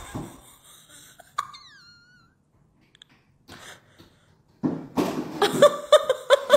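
A woman's voice: a breath trailing off at the start, a short high falling squeak with a click about a second and a half in, then loud laughing and exclaiming from about four and a half seconds in.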